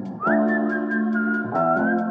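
Background music: a high whistled melody over held chords, with a light ticking beat about five times a second. The chords change twice.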